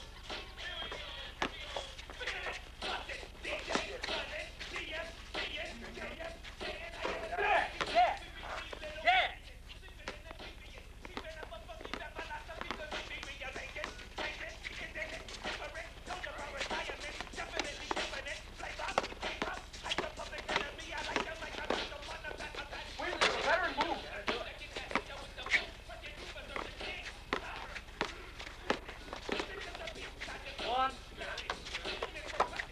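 Pickup basketball on an asphalt court: a basketball bouncing and thudding, with repeated short knocks and scattered indistinct shouts from the players. A steady low hum from the camcorder sits underneath.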